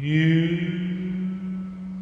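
A singer holds one long note, scooping up into it at the start, over a karaoke backing track's steady low sustained note.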